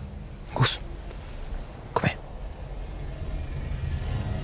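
Two short, sudden breath sounds from a person, about half a second and two seconds in, over a low steady rumble.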